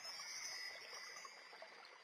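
Faint chime-like shimmer: a few steady high ringing tones that start together and fade away within about a second and a half.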